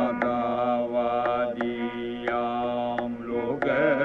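Carnatic classical music in raga Yadukula Kambhoji: an ornamented melody with sliding, wavering gamakas over a steady tambura drone, with a few scattered mridangam strokes.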